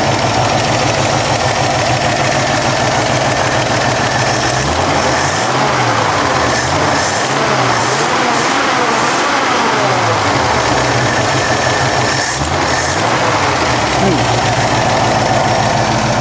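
Ford F100 pickup's engine running at a fast idle, then revved up and down by hand at the carburetor throttle linkage, once in a longer series of blips about five seconds in and again briefly near thirteen seconds. It picks up cleanly with no hesitation while not yet warmed up, now that the freshly rebuilt carburetor has a new accelerator-pump valve.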